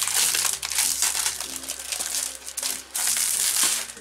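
Clear plastic cellophane wrapper crinkling as it is pulled off a scrapbook paper pad. It is a continuous, loud rustle that stops just before the end.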